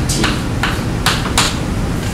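Writing on a classroom board: about five short, sharp taps and strokes in the first second and a half, over a steady low room hum.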